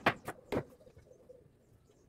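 Knife slicing a cucumber on a bamboo cutting board: three quick knocks of the blade through the cucumber onto the wood, stopping about half a second in.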